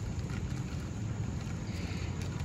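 Wind buffeting the microphone, heard as a low, uneven rumble over faint outdoor ambience.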